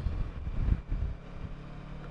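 Kawasaki Versys 650's parallel-twin engine running at road speed, under a low, uneven wind rumble on the microphone, while riding over choppy tarmac.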